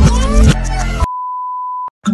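Music with a heavy bass beat cuts off abruptly about a second in and gives way to a single steady electronic beep, a pure high tone held for just under a second that ends in a click.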